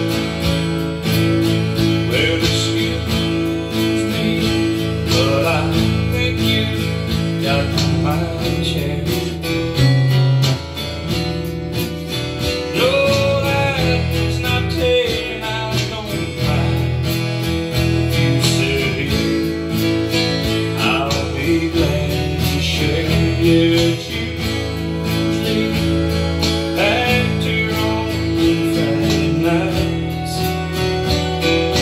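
Steel-string acoustic guitar playing a country song's accompaniment, picked and strummed chords running continuously without singing.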